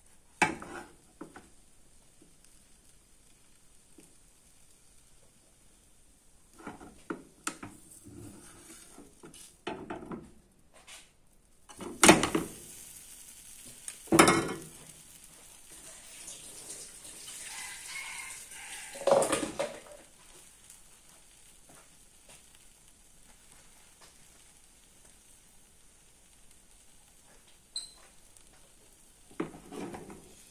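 A spatula scraping and knocking against a nonstick frying pan as tart batter is spread, in scattered strokes with the loudest two knocks near the middle, about two seconds apart. Faint sizzling of the batter frying in the pan fills the quieter stretches.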